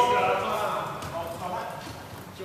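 Players' voices calling out across a large sports hall during a wheelchair basketball game, with a basketball bouncing and knocking on the wooden court.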